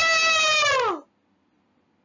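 A man imitating an elephant's trumpet with his voice through cupped hands: one high call of about a second, held and then falling in pitch at the end.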